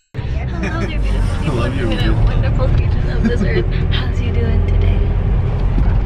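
A tour bus running on the road, heard from inside the cabin as a steady low rumble that starts abruptly, with people talking over it.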